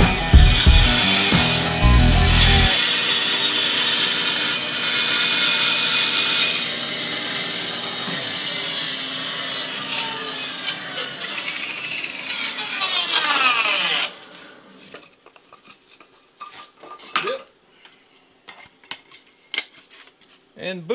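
INCA bandsaw running and cutting a curve through a piece of wood, a steady dense whir and hiss. About fourteen seconds in its pitch falls and the sound stops, leaving only light handling clicks.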